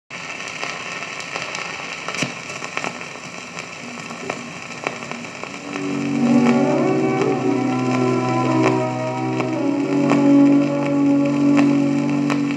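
Old gramophone record playing: the lead-in groove gives about six seconds of surface hiss and crackle with sharp clicks. Then the song's instrumental introduction starts, with held, sustained notes over the continuing crackle.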